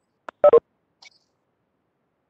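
A brief, loud two-note electronic beep about half a second in, typical of a Webex meeting notification tone. Otherwise the audio is silent.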